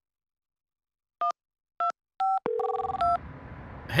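Touch-tone dialling beeps from a mobile phone keypad: a run of short two-tone beeps starting about a second in, with a brief lower tone among them. A low background hum comes in near the end.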